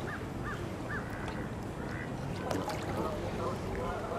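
Canada geese calling: four short honks in quick succession in the first second or so, then a fainter call, over a steady low rumble of wind or water.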